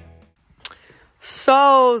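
Background music fading out at the very start, a short click, then a woman's voice beginning to speak with a drawn-out "so" near the end.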